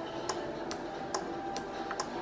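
A 12 V DC relay clicking steadily, about twice a second, as the square-wave oscillator switches it on and off and its contacts open and close.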